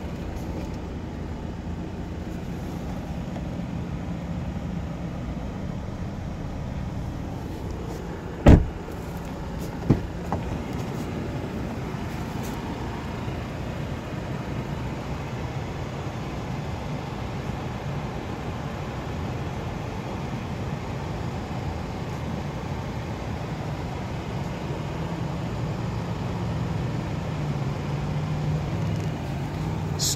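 2017 Volvo S90's four-cylinder engine idling steadily. About a third of the way in there are two sharp thumps a second and a half apart.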